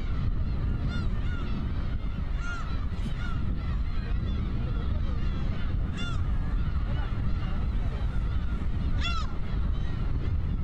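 Gulls calling, many short arched cries repeating throughout, the loudest about one, six and nine seconds in, over a steady low rumble.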